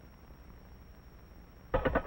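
Quiet background hiss and low hum of an old film soundtrack, with a faint steady high whine. A man's voice starts near the end.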